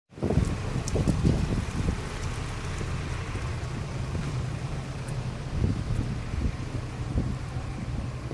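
Wind buffeting the microphone: a low, gusting rumble, strongest in the first couple of seconds and swelling again near the end.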